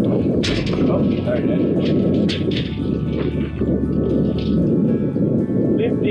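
Wind buffeting the microphone as a steady low rumble, with a few sharp clicks scattered through it.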